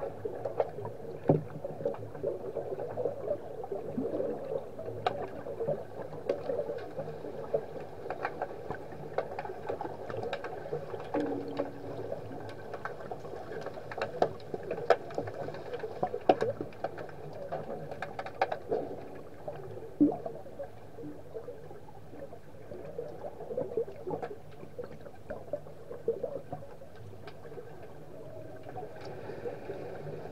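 Underwater hockey play heard through an underwater microphone: a steady muffled wash of water with frequent short clicks and knocks.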